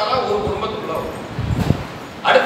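A man's voice trailing off at the end of a phrase, then a quick run of low knocks about one and a half seconds in.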